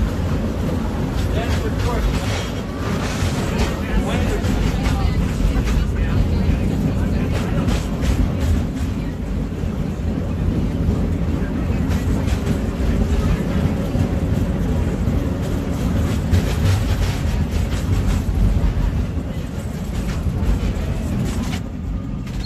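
Cable car running with a steady low rumble and frequent rattling clicks, with passengers' voices chattering in the background.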